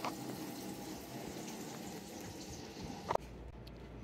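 Faint steady background noise, with one short click about three seconds in, after which the background shifts.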